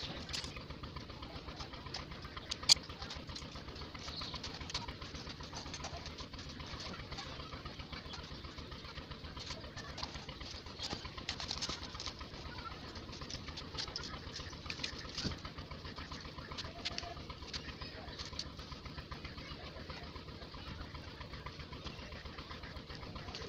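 Light metallic clicks and rattles of welded wire mesh being handled and fitted onto a PVC pipe cage frame, with one sharp click about three seconds in. Birds call in the background over a steady low hum.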